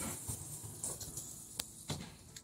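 Mirrored sliding wardrobe door rolling along its track as it is pushed shut, with two light knocks near the end.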